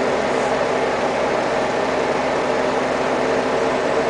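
Crane engine running steadily under the suspended bungee cage, a constant engine hum with no change in pitch.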